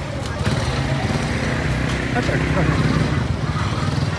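Steady low hum of a small engine running, under the chatter of market voices.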